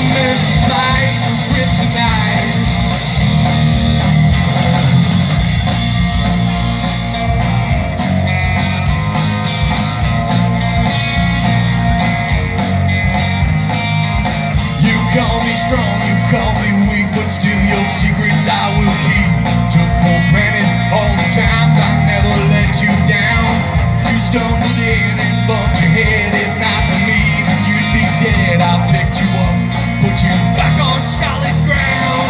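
A live rock band playing through a PA, with electric guitars over bass and drums, steady and loud throughout.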